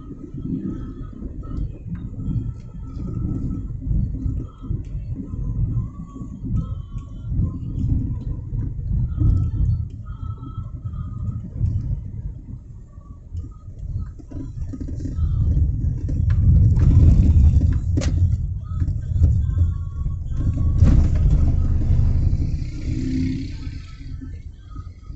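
Low rumble of a car being driven, heard from inside the cabin, swelling louder twice in the second half.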